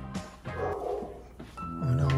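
A dog barking briefly, about half a second in, over background music.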